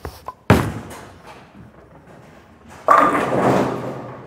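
Radical Hitter Pearl bowling ball released onto the lane: it lands with a sharp thud about half a second in, then rolls down the lane. Just before three seconds in it crashes into the pins, and the pins clatter for about a second.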